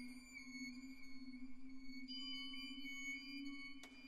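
Orchestra playing a quiet, sustained passage of a violin concerto: a low held note under high held tones. New high tones enter about halfway through, and a brief click comes near the end.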